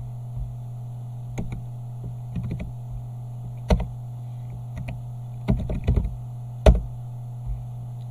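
Computer keyboard keystrokes and mouse clicks, a few isolated sharp clicks and two short runs of key taps, over a steady low hum.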